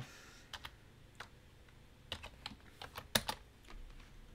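Keystrokes on a computer keyboard: scattered single taps, then a quicker run of several keys between about two and three seconds in, the loudest coming just after the three-second mark.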